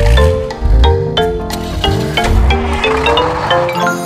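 Children's music: a run of bright xylophone notes, one as each cartoon car lands on a bar, over a backing track with deep bass thumps.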